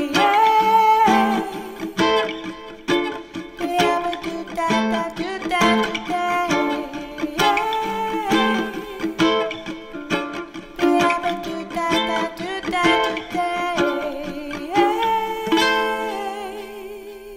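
Solo ukulele strummed in a steady rhythm with a woman singing, coming to a final chord about a second before the end that is left to ring.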